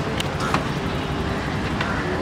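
Steady street traffic noise with three short, sharp clicks.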